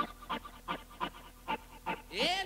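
A short, breathy, panting-like sound repeated in strict time, about three a second, with no kick drum under it: a rhythmic sample in a house DJ mix's breakdown.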